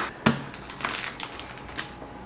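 Guitar string packets being handled and set down on a table, with irregular crinkling and a run of small clicks, and a sharp click right at the start.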